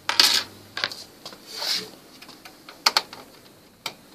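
Scattered sharp plastic clicks and knocks, with a soft rustle in the middle, from the back cover of an HP Envy 23 all-in-one PC being handled and unclipped.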